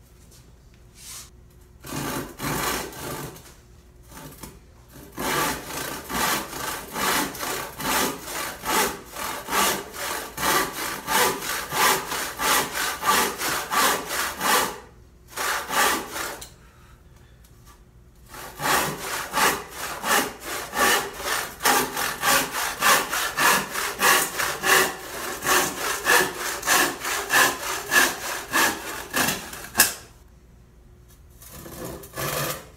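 Hand saw crosscutting a softwood board to rough length, in runs of back-and-forth strokes at about two a second, with short pauses and a longer break around the middle. The saw is coarse, cutting fast but leaving a rough cut.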